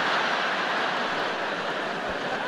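Large theatre audience laughing hard after a punchline, a steady roar of many voices that slowly eases toward the end.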